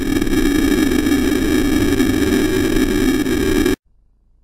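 Harsh electronic static: a steady, unchanging buzzing hiss with several steady high tones running through it, cutting off suddenly near the end. It is a staged system-error glitch sound effect.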